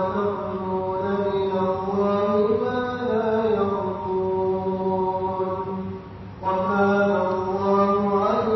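Quran recitation: a single voice chanting verses of Surah An-Nisa in long, drawn-out melodic notes, with a brief breath pause about six seconds in.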